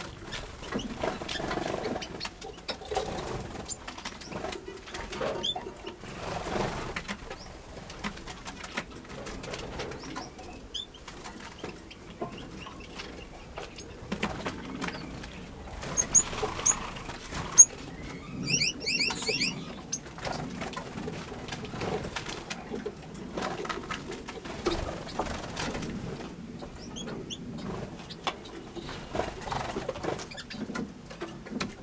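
Small aviary finches, Gouldian finches among them, fluttering between perches and nest boxes, with scattered short high chirps and a quick run of high notes about halfway through.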